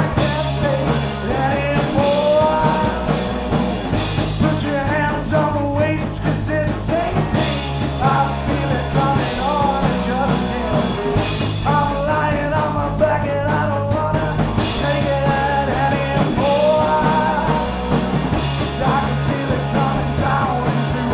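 Punk rock band playing live: distorted electric guitar, bass guitar and drums, with a man singing lead vocals.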